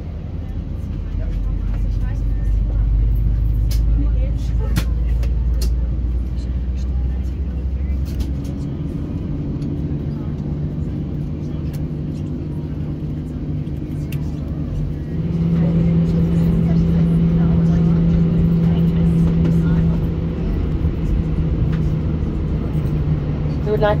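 Airbus A320 cabin noise while taxiing: a loud low rumble, then the jet engines' steady hum steps up in pitch about eight seconds in and again about fifteen seconds in, as thrust is added. A few sharp clicks or rattles come early on.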